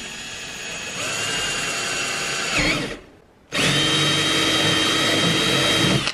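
Cordless drill boring a hole through a UTV's plastic roof panel. It runs, gets louder about a second in, and stops about halfway through. After a short pause it starts again and runs steadily.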